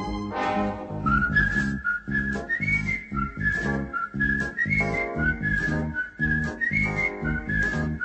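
Wooden flute playing a melody of rising and falling phrases over a recorded backing track with a steady beat, amplified through a busker's microphone and speaker.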